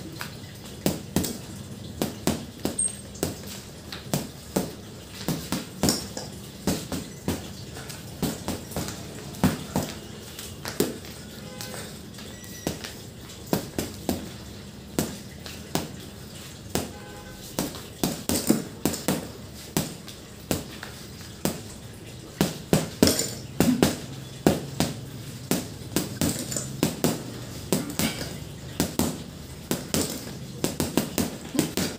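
Boxing gloves punching a hanging Power Trainer heavy bag: sharp thuds in irregular flurries of a few blows each, coming thicker in the second half.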